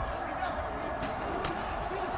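Stadium ambience from the broadcast's field audio: a steady wash of crowd and field noise with faint distant voices, and one brief sharp knock about one and a half seconds in.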